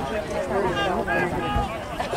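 Indistinct talk from spectators' voices in the stands.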